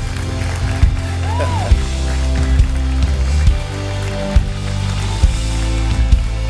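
Live worship band playing a slow song: held bass notes and chords over a kick drum beating a little more than once a second.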